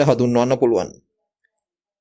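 A lecturer's voice speaking Sinhala for about the first second, then breaking off into dead silence.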